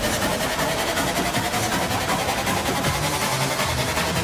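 Hardstyle DJ mix played loud over a sound system, in a build-up: a synth tone slowly rising in pitch over a rapid pulsing roll.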